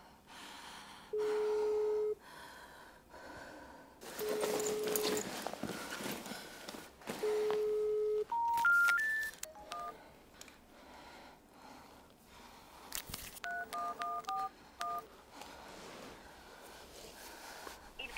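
Telephone ringback tone: a one-second beep repeating about every three seconds, with no answer. It is followed by three short beeps climbing in pitch, then a run of short keypad beeps as another number is dialled.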